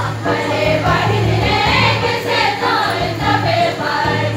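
Folk dance song sung by a group in chorus over a hand-played double-headed barrel drum keeping a steady beat.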